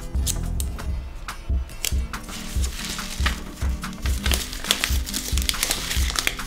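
Background music with a steady beat, over paper crinkling and rustling as a sheet of paper is folded and taped over the end of a cardboard tube; the crinkling grows denser about two seconds in.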